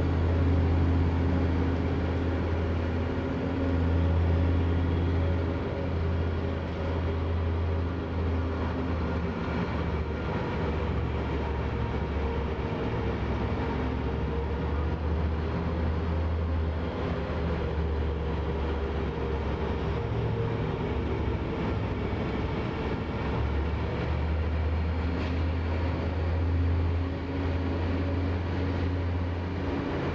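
Steady low mechanical hum of ice-arena machinery, unchanging in level, with no sudden events.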